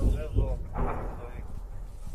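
A man's voice speaking briefly in unclear phrases, over a steady low rumble.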